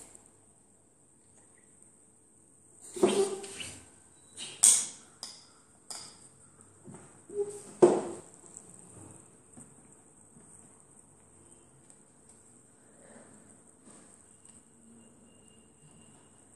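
Puzzle pieces knocking and clicking against a glass table top as they are picked up and set down: a run of sharp knocks from about three seconds in to about eight seconds in, the loudest near three and eight seconds, then only faint handling. A faint steady high-pitched whine lies underneath.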